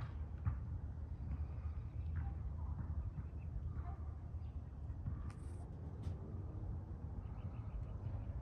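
Outdoor ambience: faint, scattered bird chirps over a steady low rumble of wind on the microphone.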